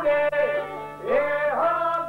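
Albanian folk song: a man singing a wavering, ornamented melody to a plucked çifteli (two-stringed long-necked lute).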